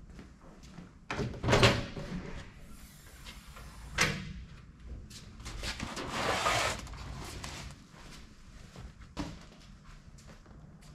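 An aluminium ute canopy's side door being opened, with a sharp click a few seconds in, then a cardboard box scraping as it is slid out of the canopy.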